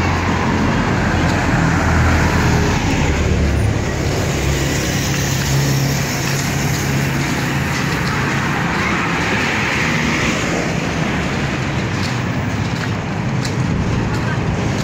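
Road traffic: cars passing close by, a steady mix of engine hum and tyre noise that swells as vehicles go past, once near the start and again about nine seconds in.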